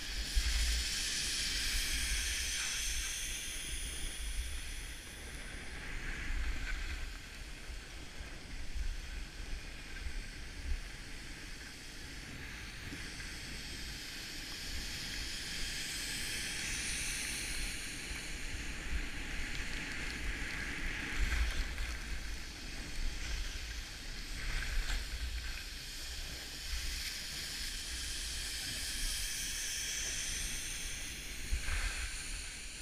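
Skis hissing and scraping over groomed snow on a downhill run, the hiss rising and falling in swells, with low wind buffeting on the microphone.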